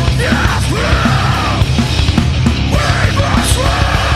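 Heavy metal band playing at full volume, with distorted guitars, bass and drums under harsh shouted vocals.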